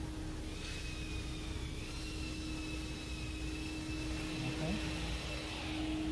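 A steady low hum with a faint high-pitched whine over it from about a second in until shortly before the end.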